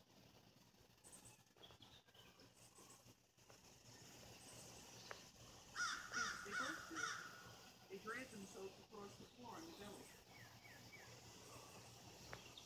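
Crows cawing faintly, a run of quick repeated caws about six seconds in, then a few more spaced calls.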